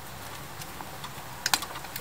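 A few sharp light clicks about one and a half seconds in, from a trials bicycle held balanced on a wooden ramp, over a faint steady background.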